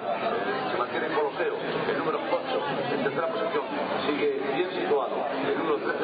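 Continuous talking with a babble of several voices behind it.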